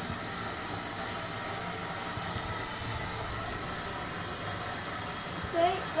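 A steady hiss of background noise, even throughout, with no distinct knocks or clicks.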